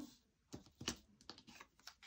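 Faint, scattered taps and light clicks of laminated picture cards being picked up and put down on a tabletop, about five in all.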